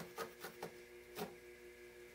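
Faint, quick stabs of a barbed felting needle jabbing black wool into a burlap-covered felting pad, several in close succession, the last about a second in. A faint steady hum lies underneath.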